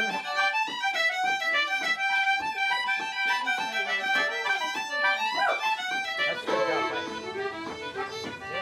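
Fiddle playing a fast Irish traditional tune, a quick run of short bowed notes.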